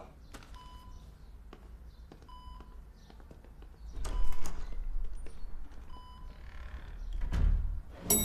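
Bedside patient monitor beeping, one short beep about every two seconds. Two dull thuds break in, the first about four seconds in and a second near the end.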